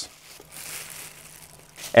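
Clear disposable plastic gloves crinkling faintly for about a second as gloved hands rub butter-and-tallow mixture onto a brisket slice.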